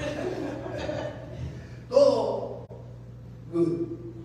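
Voices speaking over a steady low hum, with a short loud vocal burst, the loudest moment, about two seconds in.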